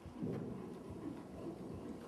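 Faint hoofbeats of a horse trotting on the sand footing of an indoor arena: soft, irregular low thuds under room noise.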